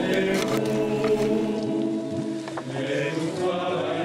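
A choir singing long held chords as the trailer's soundtrack music.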